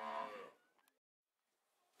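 A cow mooing: the end of one long, level call that stops about half a second in.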